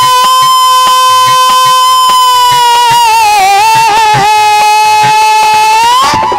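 Male singer holding one long, high note that sags a little in pitch about halfway through and climbs again at the end, over a steady hand-drum beat, in a devotional kirtan song.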